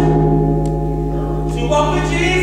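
Keyboard holding a steady low chord between sung phrases of a gospel choir, with the choir's voices coming back in about one and a half seconds in.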